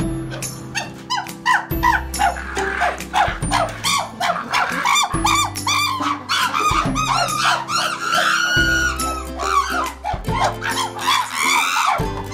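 Background music with a steady bass line, over a group of chimpanzees calling excitedly: a rapid run of short rising-and-falling barks and hoots.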